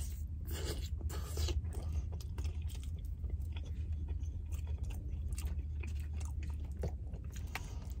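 A person chewing a mouthful of chili cheese fries close to the microphone, with irregular small clicks and smacks of the mouth, over a steady low hum inside a car's cabin.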